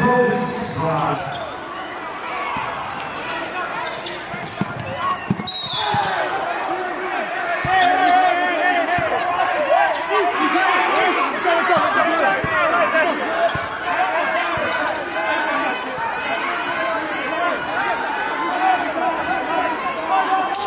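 Many voices talking and shouting over one another in a large gym, with a few sharp knocks like a basketball bouncing in the first several seconds.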